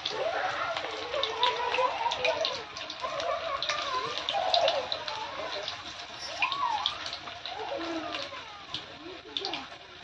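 Radish-leaf pakoras frying in hot refined oil in a kadhai, with a continuous sizzle full of small crackling pops as fresh batter goes in.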